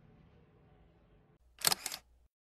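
A loud, sharp double click about one and a half seconds in, two quick bright strokes close together.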